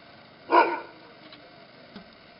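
An Afghan hound barks once, a single loud bark about half a second in.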